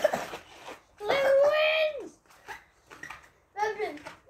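A boy's voice calling out without words: one long held shout about a second in, and a shorter cry with a falling pitch near the end.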